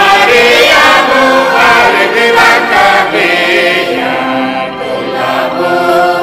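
A choir singing a Mundari-language Good Friday hymn, the voices carrying a continuous sung line.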